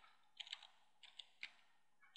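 Faint keystrokes on a computer keyboard: five separate key taps in the first second and a half as a word is typed.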